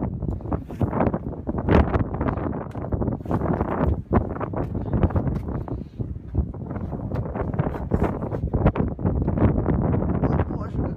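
Wind blowing across the camera microphone, an uneven low rumble broken by frequent short knocks.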